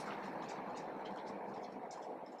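Felt-tip marker writing on a board, a few faint scratchy ticks from the pen strokes, over a louder steady rushing noise.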